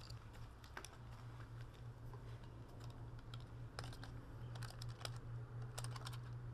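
Light, irregular plastic clicks and taps from a small toy quadcopter being handled, over a steady low hum.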